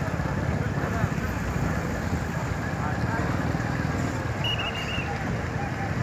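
Steady low rumble of the Speed Runner 3 high-speed ferry's engines, heard from on deck, with voices in the background. A brief high tone sounds about four and a half seconds in.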